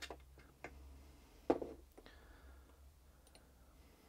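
A few light clicks and knocks from handling plastic model-kit parts and a bottle of plastic cement, the loudest knock about one and a half seconds in.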